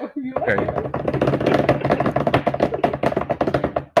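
A drum roll: rapid, even strokes held for about three and a half seconds, ending in one sharp hit, then a laugh.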